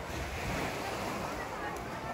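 Beach ambience: gentle surf with the mingled distant chatter of many beachgoers and some wind on the microphone.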